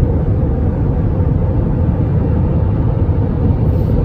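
Steady low rumble of a car driving at highway speed, heard from inside the cabin: tyre and engine noise with no distinct events.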